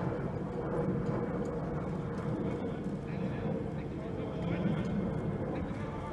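Indistinct distant voices over a steady low background rumble outdoors.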